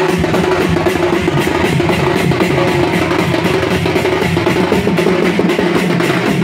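Sambalpuri baja ensemble playing: a dense, driving drum rhythm with a sustained tone held over it.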